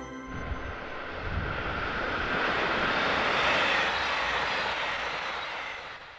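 A passenger train passing by on the track. Its running noise swells to a peak about three and a half seconds in, then fades away as the train moves off.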